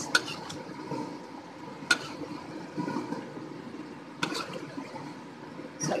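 Thickened curry sauce boiling in a wok, with a steady bubbling. Four sharp clicks, about two seconds apart, come from the metal ladle against the wok.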